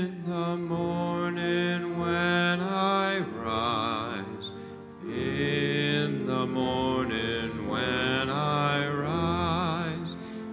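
A communion hymn sung by a solo voice with wide vibrato on long held notes, over held accompanying chords, pausing briefly twice between phrases.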